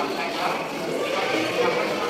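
Crowd of pilgrims talking over one another in a steady babble of many voices.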